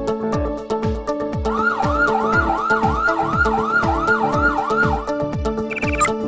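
Upbeat electronic backing music with a steady kick-drum beat. About a second and a half in, a fast-warbling electronic siren joins it, rising and falling about three times a second for some three and a half seconds, then stops.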